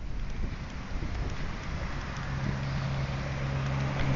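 Wind buffeting the microphone in a breeze, with a steady low hum joining about halfway through.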